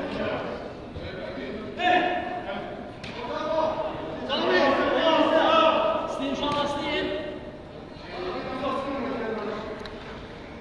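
Men's voices talking and calling out in a large indoor hall, with a few thuds of a football being kicked.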